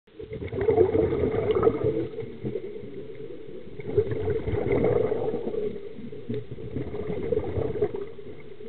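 Scuba regulator exhaust bubbles heard underwater: two loud surges of bubbling, about three seconds apart, as the diver breathes out, with quieter water noise between them.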